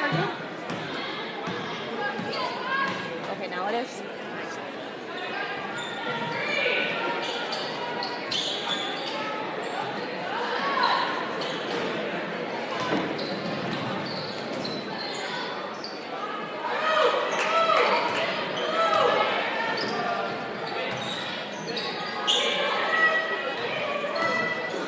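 Basketball being dribbled on a hardwood gym floor, with shouting and chatter from players and spectators echoing in a large gymnasium; the voices grow louder about two-thirds of the way through.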